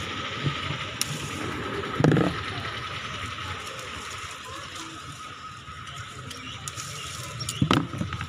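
Mango tree leaves and twigs rustling as unripe mangoes are picked by hand, with a louder rustle about two seconds in and a sharp knock near the end, over a steady faint background hum.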